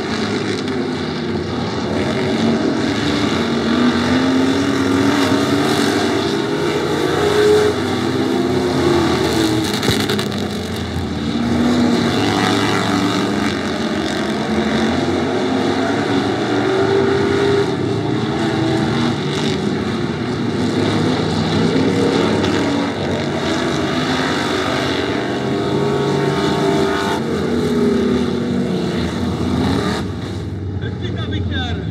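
Stock car engines racing on a dirt oval, running continuously with the pitch rising and falling over and over as the cars accelerate and lift around the laps.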